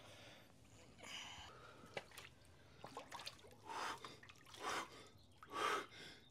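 A man getting into an ice-cold plunge tank, with water splashing, then a run of sharp, forceful gasps and breaths in the second half: the cold-shock breathing of sudden immersion in icy water.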